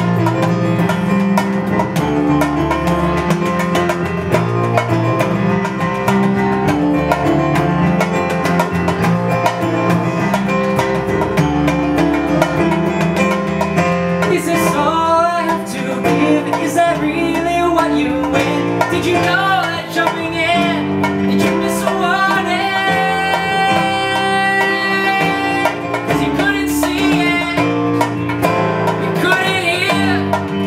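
Live solo acoustic performance: an instrumental passage on plucked strings, with a vocal melody coming in about halfway through.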